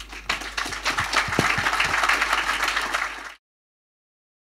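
Audience applauding, a dense patter of many hands clapping, cut off abruptly near the end.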